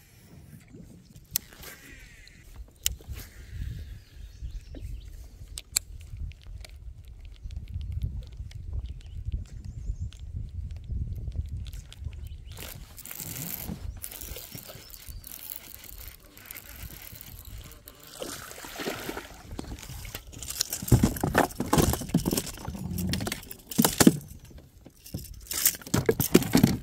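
Gear being handled in a fishing kayak: scattered knocks and rustles over a steady low rumble, with louder bursts of rustling about halfway through and again near the end.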